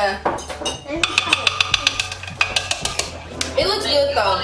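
A utensil tapping and scraping against a glass blender jar: a quick run of ringing clinks, about seven a second, lasting a little over two seconds, as a smoothie too thick to pour is worked out of the jar. Background music and voices are under it.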